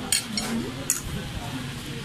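Metal spoon clinking against a plate while scooping fried rice: two short clinks about a second apart, with voices talking in the background.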